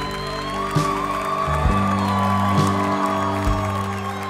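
A live band plays an instrumental passage. A drum kit is struck about once a second over steady sustained low notes and one long held higher note.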